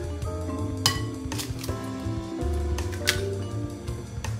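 An egg cracked on a glass mixing bowl, giving two sharp clinks of shell on glass, about a second in and about three seconds in, over soft mallet-percussion background music.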